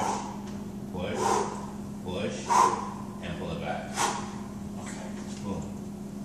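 A man breathing hard with effort during a suspended lunge: five short, forceful exhalations and grunts about a second and a half apart, the loudest near the middle, over a steady low hum.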